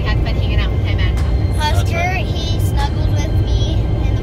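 Steady low road and engine rumble inside a moving car's cabin, with faint snatches of voices over it.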